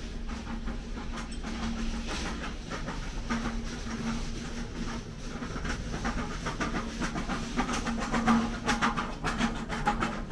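Shop ambience: a steady low hum over a background rattle and hiss, with a quick run of clicks and clatter in the last couple of seconds.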